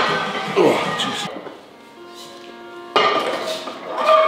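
Metal clinks and clatter of a loaded barbell and iron weight plates in a gym rack. A short stretch of steady background music comes through in a quieter moment.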